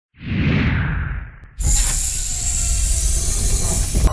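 Intro sound effects: a whoosh that swells just after the start and fades away by about a second and a half. Then a sudden, loud rushing noise with a low rumble runs on.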